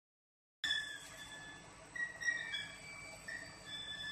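BLS twin screw cream transfer pump and its electric motor running, heard as thin high whining tones that shift in pitch every half second or so over a faint background haze, starting about half a second in.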